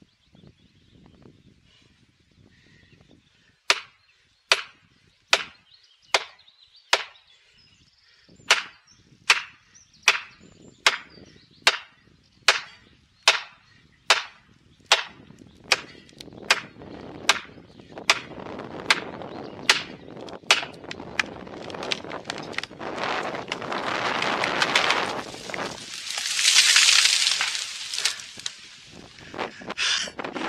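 A hammer strikes plastic felling wedges in the back cut of a large conifer about twenty times, sharp, evenly spaced blows a little over one a second. A rising rush of noise builds beneath the later blows and peaks a few seconds before the end, as the tree goes over.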